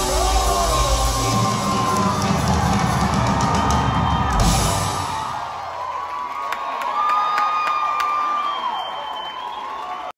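Live rock band with drums playing the closing bars of a song, which stops about five seconds in. A crowd then cheers, with long high-pitched screams and whoops.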